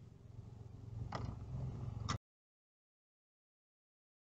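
Low, steady rumble of a car on the move, picked up by a dashcam microphone inside the cabin, growing a little louder, with two sharp clicks about one and two seconds in. Just after two seconds in the sound cuts off abruptly into dead silence.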